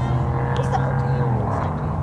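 A steady low engine hum that stops about a second and a half in, with distant voices.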